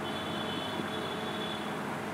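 Steady hum and hiss of a room fan or air-conditioning unit, with a faint thin high tone that stops near the end.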